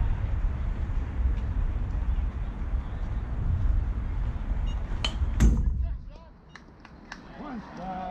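A steady low rumble, then about five seconds in two sharp cracks close together, the louder second one the pop of a pitched baseball into the catcher's mitt; after it the rumble drops away.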